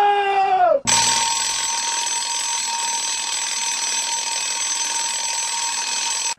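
A held pitched note with a rich, buzzy tone bends downward and stops within the first second. It gives way to a steady, unchanging tone over a hiss that holds for about five seconds.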